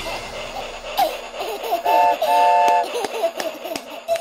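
A cartoon baby giggling over the closing music of a children's song, with two short held tones in the middle.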